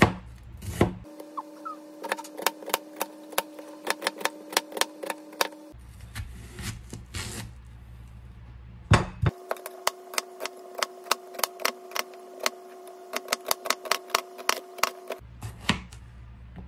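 Chef's knife dicing onions on a plastic cutting board: quick, even knife strikes on the board, about four a second, in two long runs with a short pause and a few single cuts between them.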